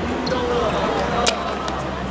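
A football kicked once, a sharp thud a little over a second in, over players' calls and chatter.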